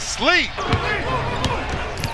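Basketball being dribbled on a hardwood court in game-broadcast audio, a few sharp bounces over low arena background noise, after a short voice near the start.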